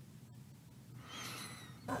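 Quiet meeting-room tone with a steady low electrical hum, with a faint, indistinct sound about a second in; a voice starts at the very end.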